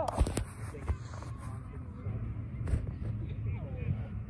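Phone being moved and covered while recording, its microphone picking up handling knocks and rubbing, with several bumps in the first second and another about three seconds in, over a steady low wind rumble. Faint distant voices come and go underneath.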